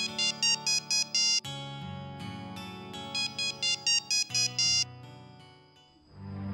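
A mobile phone's ringtone: a synthesized melody of quick, bright notes in two short phrases, over soft background music with sustained chords.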